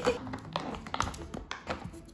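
Small dog's paws pressing on silicone pop-it fidget toys: a loose run of soft taps and clicks as its feet push the bubbles and claws touch the silicone.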